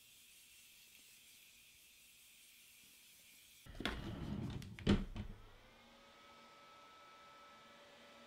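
Faint room tone, then rustling handling noise with a sharp click around four to five seconds in, after which a small handheld fan starts and runs with a faint, steady motor whine.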